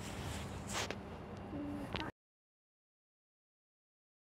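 Outdoor background noise with a low rumble and a short sharp sound about a second in; the sound cuts off abruptly to total silence about halfway through.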